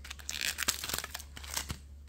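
Foil booster-pack wrappers crinkling as two Pokémon TCG packs are lifted out of a small metal tin, with light clicks and taps throughout.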